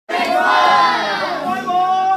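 A group of young voices singing loudly together, many voices at once with long held notes, starting abruptly.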